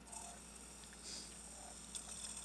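Faint, steady high-pitched whine from a small electric motor driving the rig's rotating arm, with a few light ticks.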